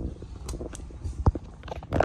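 A few light knocks and clicks, with one louder low thump about a second and a quarter in, over a low rumble.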